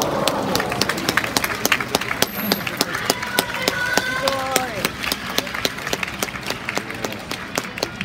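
Audience clapping with sharp, close claps several times a second, over the chatter of a crowd.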